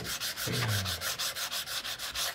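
Sandpaper rubbed by hand back and forth over the end of a small wooden box, in quick even strokes of about six a second.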